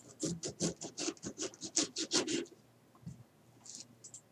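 Small kitchen knife sawing into a lime's rind, making rapid, evenly repeated scratchy strokes for about two and a half seconds, then stopping.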